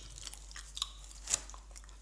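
A person chewing a mouthful of Babybel cheese dipped in chili oil with the mouth closed: a few faint, wet mouth clicks about half a second apart.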